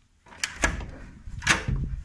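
An interior door with a glass panel being unlatched and swung open: a few clicks and knocks, the loudest about one and a half seconds in.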